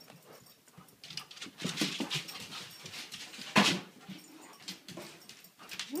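Excited Siberian huskies making short vocal noises amid scuffling and knocks, with one loud sudden sound about three and a half seconds in.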